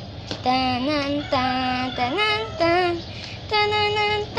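A young girl singing a short wordless tune: about five held notes with brief breaks between them, stepping up and down in pitch.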